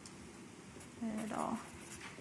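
Felt-tip marker strokes scratching faintly across paper as words are written, with a brief murmured vocal sound about a second in.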